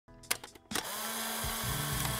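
Intro sound effect: a few sharp clicks, then a steady mechanical whirring buzz that starts suddenly and runs on under a held low tone.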